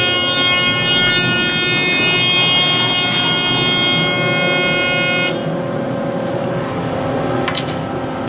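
Elevator car's fire service buzzer sounding steadily and harshly, the audible signal of a fire service Phase I recall to the main floor. It cuts off abruptly about five seconds in, leaving a fainter steady hum.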